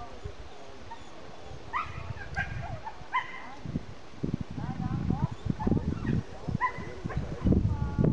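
A dog giving several short, high yips and barks over a few seconds, with low rumbling noise on the microphone growing louder in the second half.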